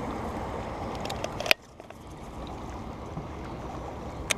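Water rushing and sloshing around a small boat's hull as it rides through wake, with wind on the microphone. A sharp click about a second and a half in, after which the noise is quieter.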